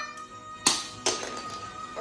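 Two sharp clicks of a small plastic toy being handled, about half a second apart, over a faint held musical note.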